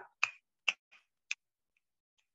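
Three short, sharp hand claps, unevenly spaced across the first second and a half.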